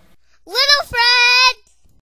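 A young boy's voice making a two-part sung sound about half a second in: the first part slides up in pitch, the second holds one high note for about half a second.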